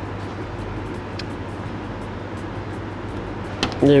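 Steady low hum and hiss of the room, with a faint click about a second in and a sharper click near the end as scissors snip the fluorocarbon leader line.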